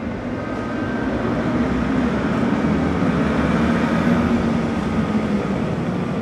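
Several vintage motorcycle engines running together: a loud, steady rumble that swells over the first two seconds, then holds.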